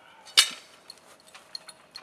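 Metal hoof-trimming tools set down on the ground: one sharp clink about half a second in, followed by a few faint ticks.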